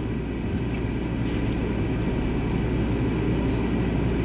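Steady low rumble and hum of background room noise, even throughout with no speech.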